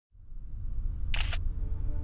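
A camera shutter clicking twice in quick succession about a second in, over a low background rumble.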